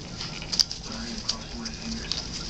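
Puppies' paws pattering and scuffling lightly on the pen floor, with a sharp click just over half a second in.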